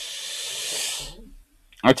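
A long breath hissing into a close microphone, lasting about a second, as a man pauses between sentences; speech resumes near the end.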